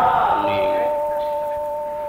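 Bronze gamelan instruments ringing: one high sustained tone struck just before and a second, lower tone struck about half a second in, both held steadily and slowly fading.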